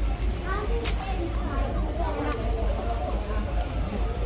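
Background voices of a busy fast-food restaurant over a low steady hum, with a few short crinkles from a torn sauce sachet and a paper fries bag, the sharpest about a second in.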